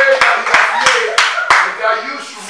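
A group of men's voices singing together, with hand clapping in time, about three claps a second, that stops about three-quarters of the way through.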